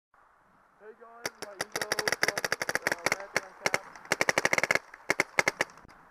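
Planet Eclipse Ego 10 electropneumatic paintball marker firing in ramping uncapped mode, so the rate climbs with no limit. It fires several rapid strings of sharp pops, starting about a second in, with brief breaks between strings.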